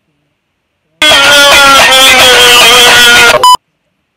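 A very loud, distorted, sustained yell starts about a second in and holds for about two and a half seconds with a slightly falling pitch. It is cut off by a brief electronic bleep.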